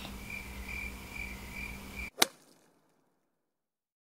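Quiet room tone with a low hum and a cricket chirping about twice a second, then a sharp click and dead silence about halfway through where the recording is cut.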